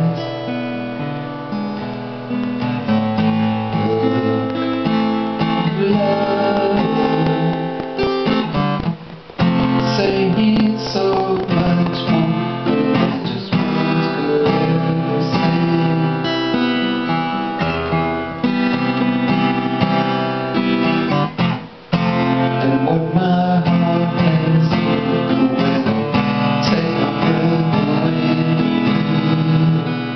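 Taylor 114e Grand Auditorium acoustic-electric guitar played solo, an instrumental passage of chords and melody notes. The playing breaks off briefly twice, about nine and twenty-one seconds in.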